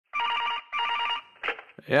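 Telephone ringing in two short bursts, one after the other, then a man's voice answers near the end.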